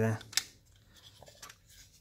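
Cheap plastic joints of a transformable robot toy clicking as a leg section is swung open: one sharp click about a third of a second in, then a few faint clicks and scrapes of plastic.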